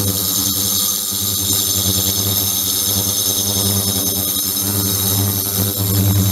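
Ultrasonic tank's transducers running: a steady electrical buzz with a strong low hum and a high-pitched whine above it. The low hum weakens a little from about a second in, then returns near the end.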